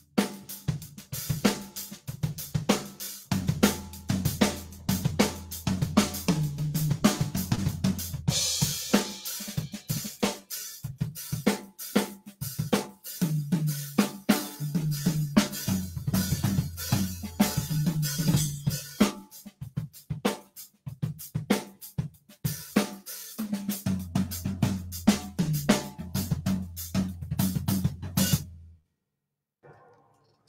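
Mapex drum kit played as a demonstration: a steady hi-hat rhythm kept going while fill-like figures on snare, toms and bass drum are played around it. The playing stops abruptly near the end.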